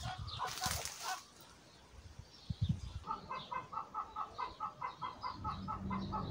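Leaves brushing and rustling close to the microphone in the first second, then from about three seconds in a chicken clucking in a fast, even series of about four clucks a second.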